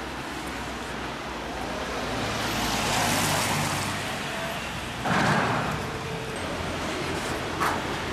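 Road traffic on a street: vehicles driving past, the noise swelling and fading in the middle, then a sudden louder rush about five seconds in.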